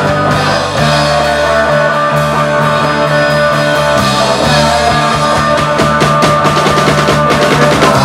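A live rock band plays electric guitars over a drum kit, loud and steady. The drum hits get busier in the second half.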